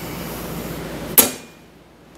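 A single sharp knock about a second in, the loudest sound here, following a steady hiss and fading quickly afterwards.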